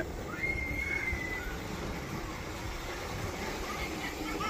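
A young girl's high squeal of laughter, held for about a second, over a low steady rumble.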